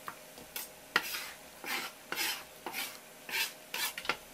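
Raw squid tentacles squelching and slapping as they are pulled apart and gathered by hand on a wet wooden cutting board. A sharp tap about a second in, then a string of short wet bursts.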